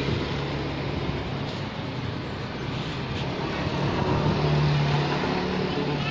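Road traffic: a steady rumble of passing vehicles, with an engine's low hum growing louder about four to five seconds in as one goes by.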